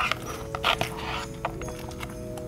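A few short clicks and scrapes of a plastic utensil in a paper takeout box as food is scooped out, over soft background music with steady held notes.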